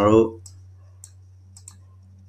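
A few faint, sharp computer mouse clicks, spaced about half a second apart, over a steady low electrical hum on the recording.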